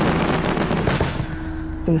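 Crackling burst of noise, dense with rapid pops like a fast crackle or spark, fading over about a second and a half; a low steady tone comes in underneath about halfway through.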